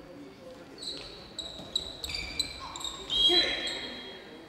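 Handball bouncing on the sports-hall floor and shoes squeaking as players move on the court, with voices in the hall and a louder, longer high-pitched sound a little after three seconds.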